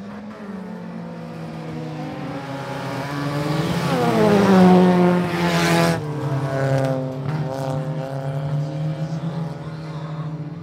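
A pack of folkrace hatchback race cars on a dirt track, engines revving hard. They grow louder as they come on, are loudest about five seconds in as they pass close by, and the engine note falls and drops off suddenly near six seconds. After that the engines run on further away through the bend.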